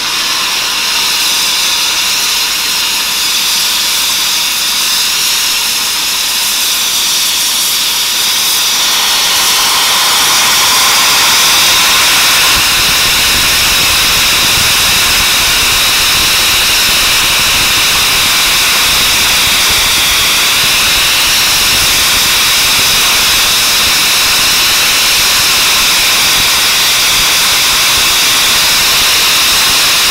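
Compressed air being blown down from a steam locomotive that runs on compressed air instead of boiler steam, venting to drop its air pressure: a loud, steady hiss that grows louder and higher about ten seconds in, then holds.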